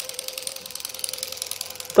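Remote-control robot cockroach toy walking across a tiled floor: its small motor and leg mechanism make a rapid, even clatter of about twenty clicks a second, over a faint steady hum.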